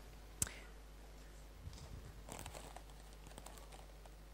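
A foil chip packet being handled, with faint, irregular crinkling rustles through the second half. A single sharp click comes about half a second in.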